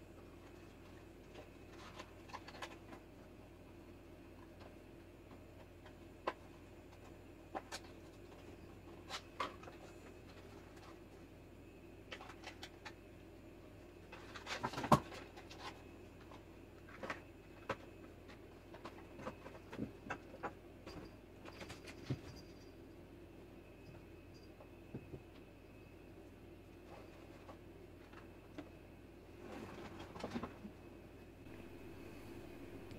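Faint steady electrical hum with scattered light clicks and ticks, and a louder cluster of knocks about halfway through.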